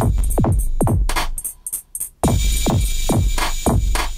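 Electronic hip-hop drum beat played from the iMPC Pro app, with deep kicks that drop in pitch and crisp hi-hats, run through the app's BoomRoom reverb. The beat breaks off briefly just before the halfway point and then comes back in.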